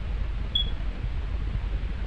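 Steady low hum and hiss of background room noise on the recording, with one short high beep about half a second in.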